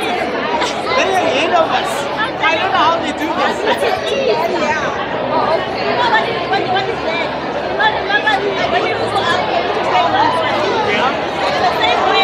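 Crowd chatter: many people talking over one another, with some laughter close by.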